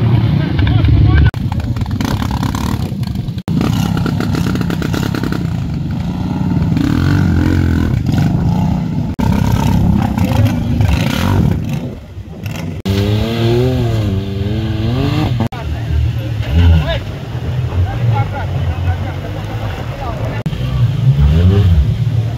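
A motorcycle engine, then a quad bike engine, revving hard as they churn and spin their wheels through deep mud, with voices over them. The sound changes abruptly several times at cuts, with rising and falling revs after the middle.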